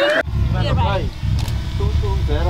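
People talking over a low, steady rumble that cuts in abruptly a quarter second in.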